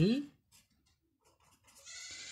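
A high, held animal call at a steady pitch begins near the end. Before it there is a faint scratching of a marker writing on paper.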